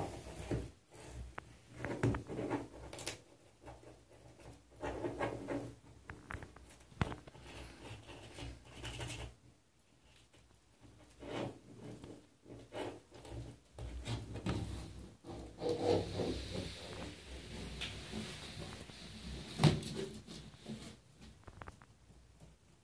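Irregular soft scrapes, taps and rubbing on a bathtub's surface as a pet rat moves about and a hand moves near it, with one sharper knock near the end.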